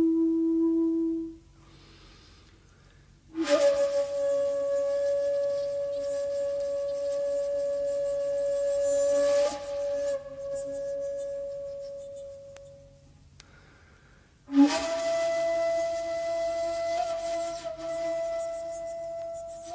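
Solo shakuhachi, a long bamboo end-blown flute, playing slow, breathy held notes. A low note ends about a second in. After a pause, a higher note starts sharply and is held for about nine seconds while it fades. After another pause, a still higher note starts near the end.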